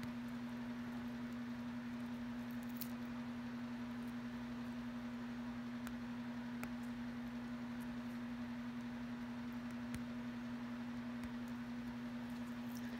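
A steady low hum at one pitch throughout, with three faint clicks of small metal jewelry pieces being worked apart between the fingers.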